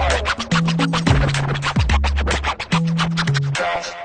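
DJ scratching on a Numark DJ controller's jog wheel: a fast run of short scratch strokes cut over a bass-heavy beat.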